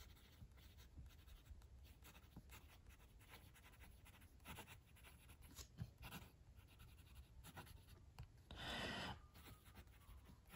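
Faint scratching of a Lamy Logo fountain pen's medium steel nib writing on Clairefontaine paper, in short strokes, with a longer, louder stretch near the end. The nib is running smooth with very little feedback.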